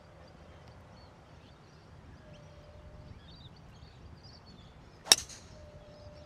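A golf club striking a teed golf ball once, a single sharp crack about five seconds in. Faint birdsong chirps underneath.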